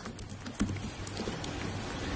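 A few faint taps on a laptop keyboard over a low steady hum.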